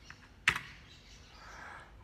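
A single sharp keystroke on a computer keyboard about half a second in: the Enter key pressed to confirm Finish and exit the Raspberry Pi configuration tool.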